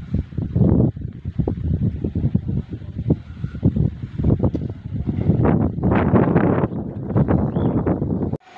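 Wind buffeting the phone's microphone in uneven gusts, a loud low rumble that swells and drops from moment to moment.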